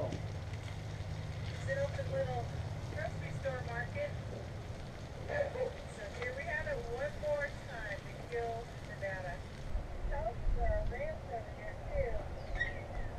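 Indistinct voice murmuring on and off, under a steady low hum that stops about four seconds in.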